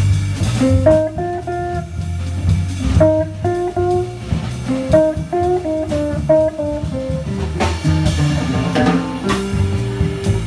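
Live jazz combo: an archtop electric guitar plays a solo line of quick single notes over plucked upright double bass and a drum kit with cymbals.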